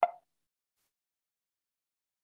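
Silence, broken only by one short click at the very start, lasting a fraction of a second.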